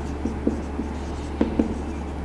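Marker pen writing on a whiteboard: a run of short separate strokes as letters are written.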